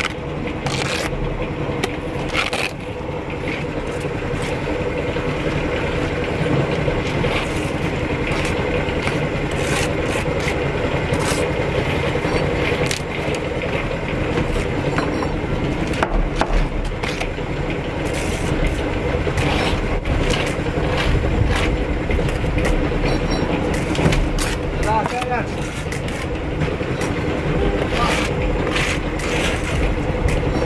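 Bricklaying at work: a steel trowel scraping and spreading mortar and bricks being set down with sharp clicks and taps, over a steady mechanical drone.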